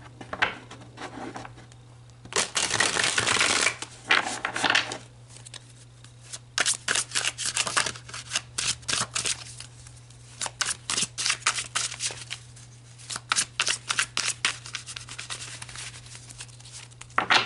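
A tarot deck being shuffled by hand: a brief stretch of continuous riffling early on, then a long run of quick card slaps and flicks, several a second, over a steady low hum.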